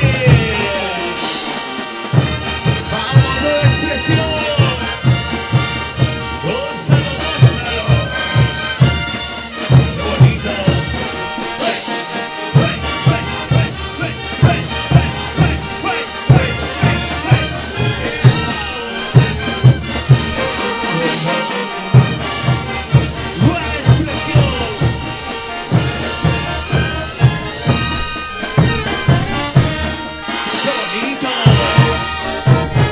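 Large brass band playing chutas: trumpets, saxophones, euphoniums and sousaphones over a steady bass-drum and cymbal beat. The drums drop out for a moment near the start, about twelve seconds in, and about twenty-one seconds in.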